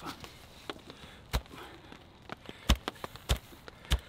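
Four sharp wooden knocks of a baton striking the spine of a survival knife, driving the blade down through a log of dense pine: one about a second and a half in, then three more close together over the last second and a half.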